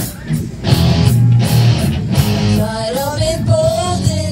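A student rock band playing live through amplifiers: electric guitar, bass guitar and drum kit. The band drops back briefly at the start, then plays on at full volume, with a higher melody line coming in about two and a half seconds in.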